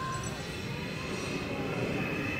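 A steady low mechanical rumble, like a large machine or engine running, with faint voices of a crowd.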